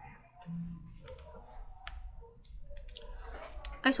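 A handful of sharp, separate computer mouse clicks as slides are advanced, over a faint low hum.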